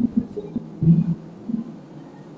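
A woman's voice in a few short, soft murmured fragments, hummed sounds rather than clear words, with the loudest about a second in.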